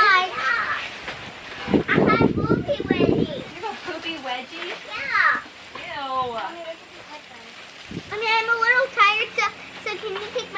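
A toddler whining and fussing in several high-pitched bursts, with short quieter gaps between them.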